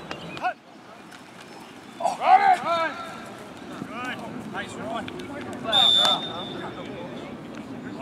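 Players shouting on the field during a flag football play, then a referee's whistle blows once just before six seconds in and is held about a second and a half.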